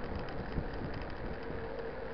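Wind rushing over the microphone and tyre noise of mountain bikes rolling along an asphalt road, an even rushing noise with a faint steady hum running under it.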